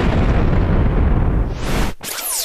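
Explosion-like blast: a loud, dense rumble with most of its weight low down, lasting almost two seconds, with a hiss rising near the end before it cuts off abruptly.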